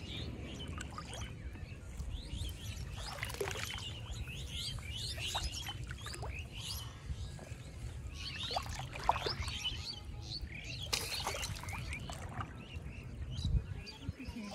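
Birds chirping, with many short calls scattered throughout, over a steady low rumble.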